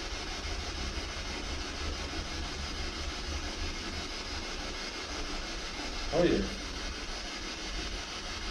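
Steady hiss of radio static from a spirit-box radio scanner sweeping through frequencies, over a low rumble. A short spoken exclamation comes near the end.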